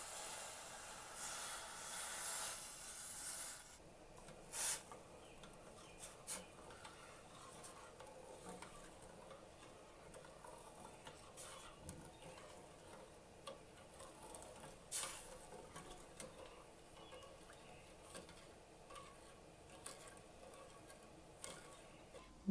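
Water pouring onto raw cane sugar in a stainless-steel pot for about four seconds, then a metal spoon stirring the sugar syrup, faint, with occasional clinks and scrapes against the pot.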